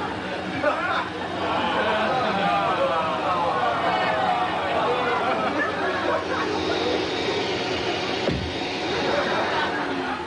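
Studio audience laughing and chattering, many voices overlapping, with a faint steady hum underneath.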